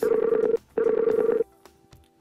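Skype's outgoing-call ringing tone on a Mac: two short rings of a rapidly pulsing tone, each well under a second long with a brief gap between, the call not yet answered.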